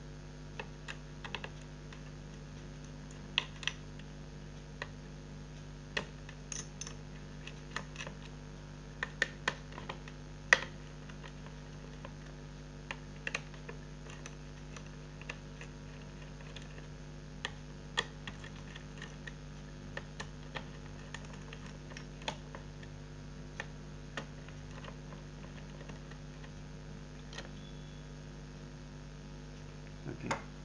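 Scattered clicks and light taps of a small screwdriver and metal parts as the screws holding a laptop's copper-piped heatsink and fan assembly are undone and the assembly is lifted off. The clicks come irregularly, a few each second at times, over a steady low hum.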